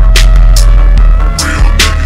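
Slowed-down, chopped-and-screwed hip-hop track: a deep, heavy bass held under steady synth tones, with a few sharp drum hits cutting through.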